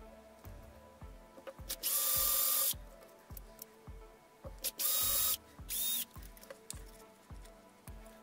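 Cordless drill boring small holes in a thin plastic strip: the motor runs for under a second about two seconds in, then again about five seconds in, followed by a brief spurt. Background music with a steady beat runs underneath.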